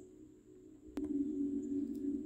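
Soft ambient background music: a steady low drone that comes in with a click about a second in, after a nearly silent first second.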